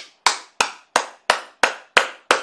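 A man clapping his hands in celebration: a steady rhythm of sharp claps, about three a second.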